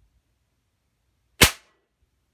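A single sharp crack about one and a half seconds in: a shot from a .177 multi-pump air rifle (Umarex NXG APX), with the pellet punching into a composite-toe safety shoe set on a wooden board.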